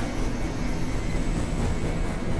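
Experimental synthesizer noise drone: a dense, steady rumbling wash of noise with a few faint high tones held through it.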